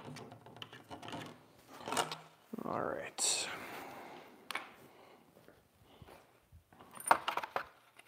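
Handling noise as the RC jet's bypass duct is lifted out of the fuselage and carried off: scattered light clicks and clatters, a longer scraping rustle about three seconds in, and a quick cluster of clicks near the end.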